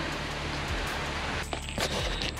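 Steady hiss of falling rain, with a brief dip about one and a half seconds in.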